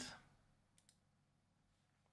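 Near silence with two faint, quick computer mouse clicks a little under a second in, as a file-replace prompt is confirmed.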